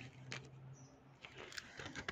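Near quiet: faint room tone with a few soft, brief knocks.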